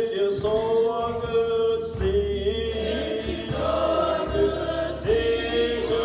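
Church choir singing a gospel hymn in long, held notes.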